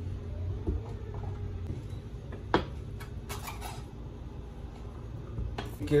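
Crisp snaps and rustles of leaves being pulled off a head of white cabbage, with a few sharp cracks scattered through, the strongest about halfway in, over a low steady hum.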